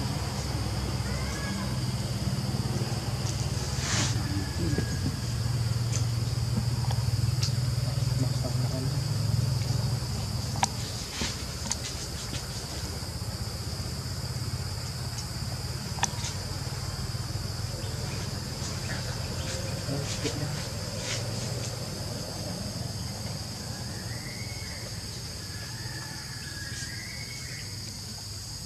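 Insects droning steadily in one constant high-pitched note, over a low rumble that is loudest in the first ten seconds and then eases. Scattered short clicks and a few brief rising-and-falling chirps near the end.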